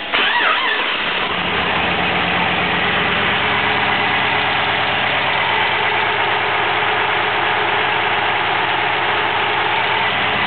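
LS1 V8 engine starting with a jump in level, then idling steadily.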